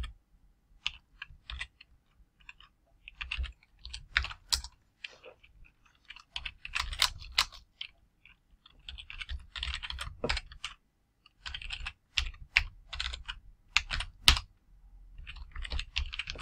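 Typing on a computer keyboard: quick runs of keystrokes separated by short pauses.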